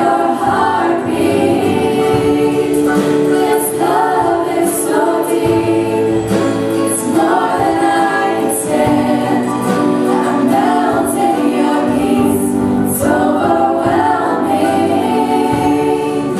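A choir singing a Christian worship song, the voices moving through phrases over steady held notes beneath.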